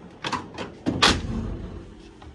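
Metal drawer of a Snap-on Epiq tool chest sliding shut, with a few clicks and a louder knock about a second in as it closes.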